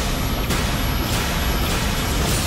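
Film-trailer sound effects: a loud, dense rumbling roar with a rushing hit about every 0.6 seconds, three times.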